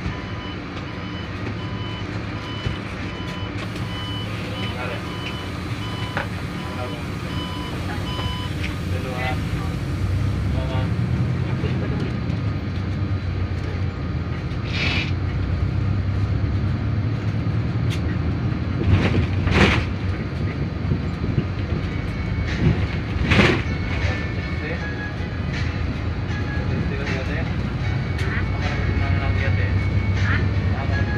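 Bus engine running as it drives along, heard from the front of the cabin, with a regular repeating electronic beep for the first nine seconds or so. A few short, loud noises cut through in the second half.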